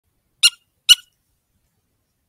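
Kyle's Custom Calls "Easy Squeak" predator squeaker call sounded twice, two short, sharp, high-pitched squeaks about half a second apart, imitating a distressed rodent to hold a coyote's attention.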